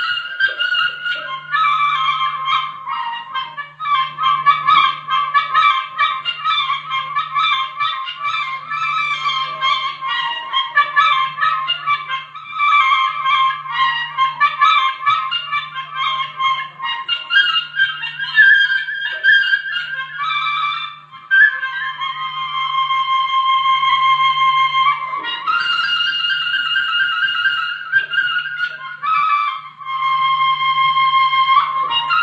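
Instrumental interlude of live Khowar (Chitrali) folk music: a wind instrument carries a busy, high melody over a low pulse that repeats about once a second.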